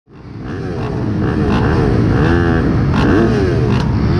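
Several off-road motorcycle engines revving at once, their pitches rising and falling over one another. The sound fades in from silence within the first half second.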